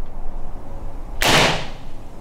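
A Crosman 1377 .177 multi-pump pneumatic pellet pistol fired once, a little over a second in: a single short, sharp rush of released air that fades quickly.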